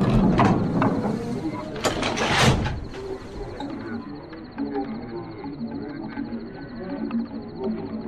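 Layered sound-effect ambience: a low rumble and several sharp clacks in the first three seconds, then a quieter background of indistinct murmuring voices.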